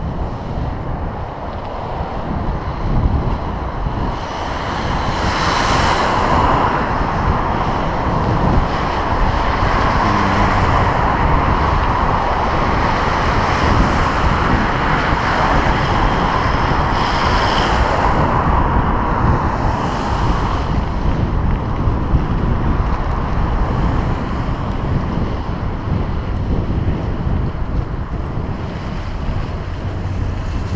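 Wind buffeting an action camera's microphone on a moving bicycle, a constant low rumble, with motor traffic passing close by. A broad swell of vehicle noise builds from about five seconds in and fades after about twenty, peaking twice as cars go past.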